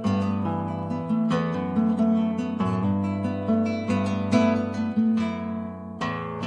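Nylon-string classical guitar played solo: plucked chords and notes struck one after another, each ringing and dying away.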